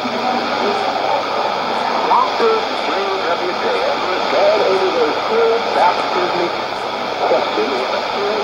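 Shortwave AM broadcast of a preacher's talk, played through a Sony ICF-2010 receiver's loudspeaker. The speech is hard to make out under steady hiss and static.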